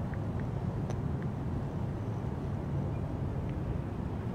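Steady low hum of outdoor background noise, with a few faint short clicks scattered through it.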